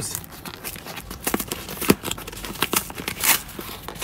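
Corrugated cardboard box being torn open by hand: irregular ripping and crackling with sharp snaps, the strongest about two seconds in and again near the end.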